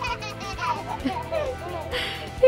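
Young children's voices chattering softly at play, with steady background music underneath.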